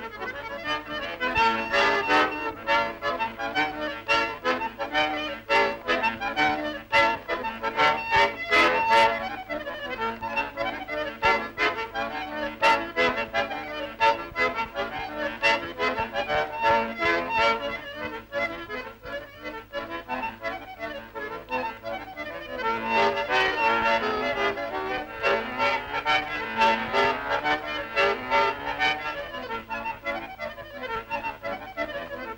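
Accordion music with a steady rhythm, growing fuller and louder in two passages, near the start and near the end.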